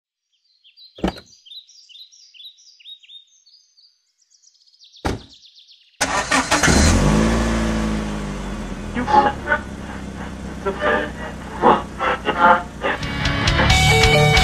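Birds chirping with two sharp clicks, then about six seconds in a car engine starts abruptly and runs, its pitch settling after the start. Rock music comes up near the end.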